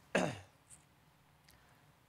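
A man makes one short vocal burst that falls in pitch, a throat-clearing or laughing sound, then the room goes quiet.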